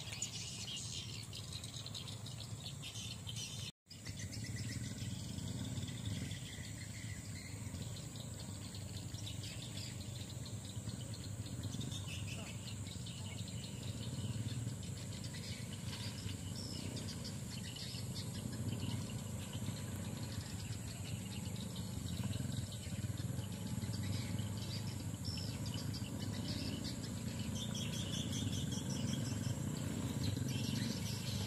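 Birds chirping faintly over a steady low rumble that grows a little louder toward the end; the sound cuts out for a moment about four seconds in.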